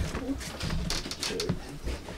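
Short, low, wordless vocal sounds from a person, with a few light knocks.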